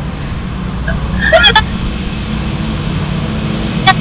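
A low steady hum running under the call audio, with a short voice sound, like a brief laugh or murmur, about a second and a half in.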